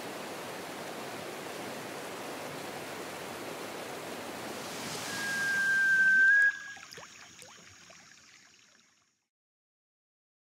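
Rushing mountain river over boulders, a steady rush of white water. About five seconds in it swells, a single steady high tone sounds for about a second and a half, and both cut off at once, leaving a few faint ticks that fade to silence.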